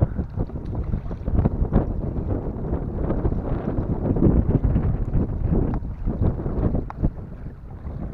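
Wind buffeting the camera's microphone: a loud, uneven low rumble with irregular thumps and gusts.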